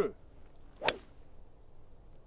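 A 3-wood striking a golf ball once, a single sharp crack about a second in, from a short, compact swing.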